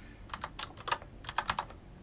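Computer keyboard typing: a quick run of about eight keystroke clicks in two short groups.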